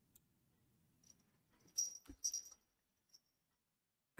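Near silence with a few faint, short computer mouse clicks a little under two seconds in.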